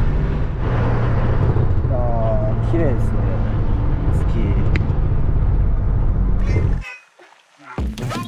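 Steady low rumble of engine and road noise inside a moving truck's cab. It cuts off abruptly about seven seconds in.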